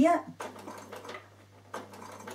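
Bernina sewing machine starting to stitch near the end, its motor and needle running on steadily.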